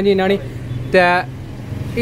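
Short stretches of a man's speech over a low, steady background rumble.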